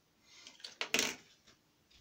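Soft rustling of movement with two sharp knocks or clicks about a second in, as someone shifts close to the camera and handles something.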